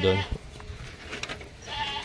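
A goat bleats once, briefly, near the end after a quiet stretch.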